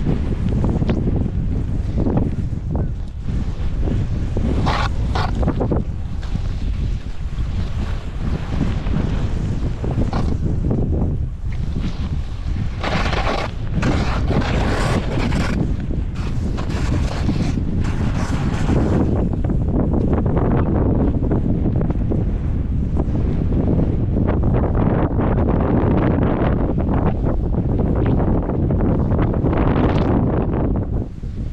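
Wind buffeting the microphone as a snowboard slides fast down cut-up snow. The board's hiss and scrape over the snow swells in several louder stretches in the first half and eases off near the end.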